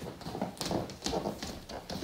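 Irregular soft knocks and rustles of a person shifting about on a wooden floor.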